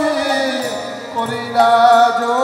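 Bengali devotional kirtan: sung, chant-like vocal lines held and sliding over a harmonium, with a new phrase starting about one and a half seconds in.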